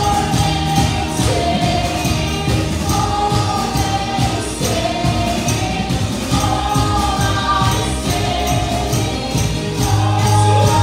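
Group of voices singing a worship song with held notes, over instrumental accompaniment with a steady percussive beat.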